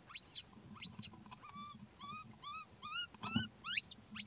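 Infant macaque crying: short high squeals that rise sharply in pitch, with a quick run of short arched coos near the middle. A dull thump comes with a loud squeal about three seconds in.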